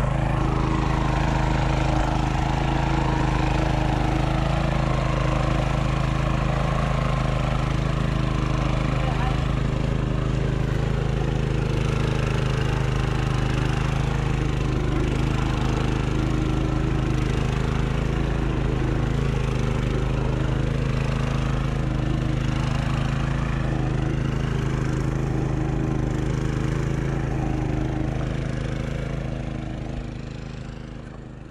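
Small walk-behind power tiller's engine running steadily at an even pitch as the machine churns through a flooded rice paddy. The sound fades away near the end.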